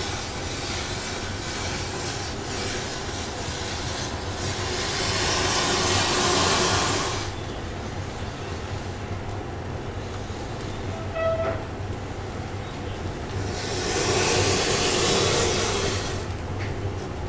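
Bundles of wooden matchsticks burning with tall flames: a steady rushing fire noise that swells louder twice, about five to seven seconds in and again near the end, with a brief squeak a little past the middle.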